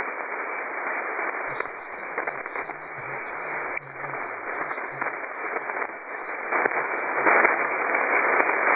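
Shortwave receiver static: the hiss of band noise on 40-metre sideband from a web SDR, with the narrow, muffled top of a sideband receiver filter, growing louder in the last couple of seconds. No transmitted signal comes through it, because the receiving station lies in the skip zone.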